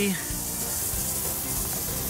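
Lawn sprinkler heads hissing steadily as compressed air forces a mist of water out of the irrigation lines during a winterizing blowout.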